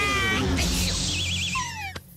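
Cartoon sound effects over a music bed: a falling, meow-like yowl, then a wavering whistle-like tone and a short downward glide. The sound drops away sharply at the end.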